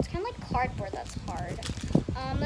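A high voice makes short, wordless, gliding sounds, over light clicking and crinkling of small plastic bags being handled.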